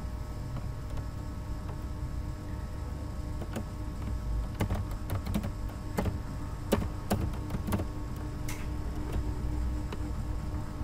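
Computer keyboard being typed on: scattered key clicks, thickest in the middle seconds, over a steady low hum.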